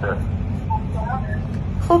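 Steady low rumble, like a vehicle's running noise, coming through a phone's loudspeaker during a call, with faint, scattered speech from the far end over it. Louder speech begins near the end.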